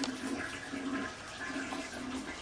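Toilet flushing, with water rushing steadily in a small tiled restroom.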